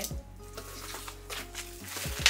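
Soft background music with faint crackly rustling of plastic air-cushion packing in a cardboard box as it is handled, and a couple of light knocks near the end.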